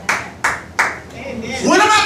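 Three sharp hand claps in an even rhythm, about two to three a second, in a church during a sermon, followed near the end by a man's voice starting to speak.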